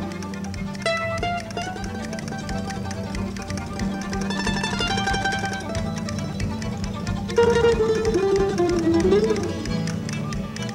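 Live acoustic string band playing an instrumental tune, mandolin to the fore over fiddle, upright bass and drums. The melody gets louder about seven seconds in.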